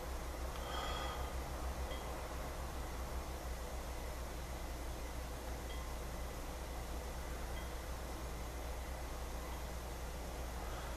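A man breathing quietly while holding back a cough reflex, with one short breath carrying a faint whistle about a second in. A steady low hum runs underneath.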